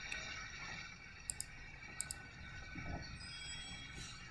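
Two quick double-clicks of a computer mouse, less than a second apart, over a faint steady background hum.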